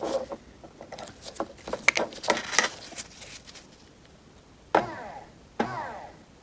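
Clicks and scrapes of alligator clip test leads being fitted to a small DC motor, then the motor, from a Mini Cooper R53 door lock actuator, whirring in two short bursts near the end when touched to a 9-volt battery. The motor runs, so it works.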